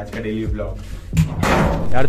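A lift's collapsible steel grille gate slammed: a sharp bang a little over a second in, then a short noisy metallic crash.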